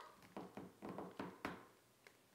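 Faint crinkling of a clear plastic bag of shredded paper filler pressed under the fingers: a few short rustles in the first second and a half, then it falls quiet.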